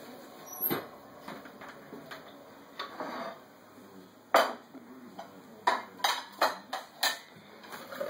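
A metal table knife spreading honey on a slice of bread, with soft scraping and sharp clicks of the knife. The loudest click comes about four seconds in, and a quick run of five or so follows near the end.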